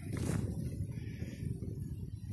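Low, irregular rumbling and crackling noise from a phone's microphone being handled and moved about.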